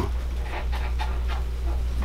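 A steady low hum, with a few faint short soft sounds over it.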